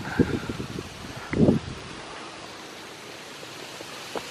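Steady outdoor background hiss with light wind on the microphone, and a brief low thump about one and a half seconds in.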